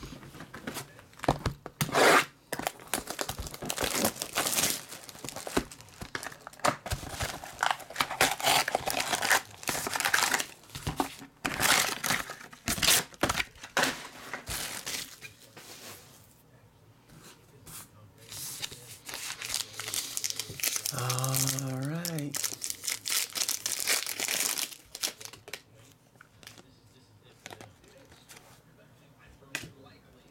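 Trading card pack wrappers torn open and crinkled, with packs handled in quick bursts through the first half and again briefly about three-quarters through, then near quiet.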